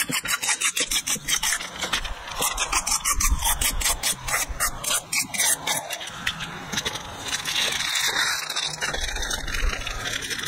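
Fingers scraping soft filling off the inside of a bowl while a plastic zip-top bag rustles, in quick repeated strokes for the first several seconds, then smoother rubbing.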